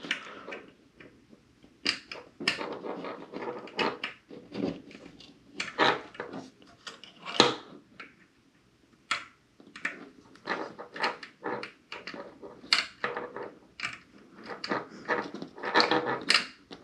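A Phillips screwdriver clicking and scraping in the small screws of a screw terminal as they are worked loose, in short, irregular strokes with a brief pause about halfway through. The driver is too large for the screws.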